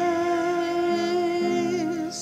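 Sung church music: a voice holds one long note over a soft, sustained accompaniment whose lower notes shift about a second in.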